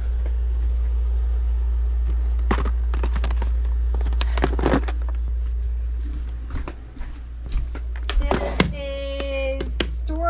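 Clear plastic organizer case full of enamel pins being carried and handled, giving scattered knocks and clicks over a steady low rumble. Near the end a person's voice holds one steady note for about a second.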